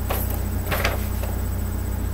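Sheets of printer paper being handled, with brief rustles just after the start and again, louder, around a second in. A steady low hum runs underneath.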